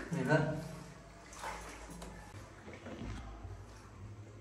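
Mostly speech: a voice for about the first second and a brief sound about a second and a half in, then low room tone in a small tiled bathroom.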